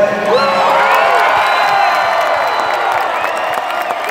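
A crowd of football players cheering and whooping, many voices shouting at once with rising and falling yells, with some clapping. The cheering breaks out a moment in and stays loud.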